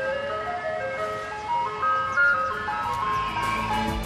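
An ice cream van's chimes playing a melody one note at a time, with a low rumble coming in near the end.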